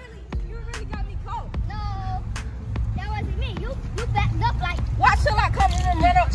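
Children's voices shouting and calling out, growing louder toward the end, over a steady low rumble of wind on the microphone, with a few sharp clicks.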